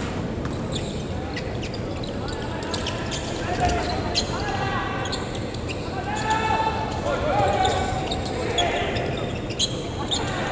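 A volleyball knocking sharply against the court and players' hands every second or so, with short shouts from the players, in a large, near-empty indoor arena.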